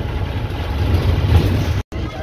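Bus engine running with a steady low rumble, heard from inside the cab while driving along the road. The sound cuts out abruptly for an instant near the end.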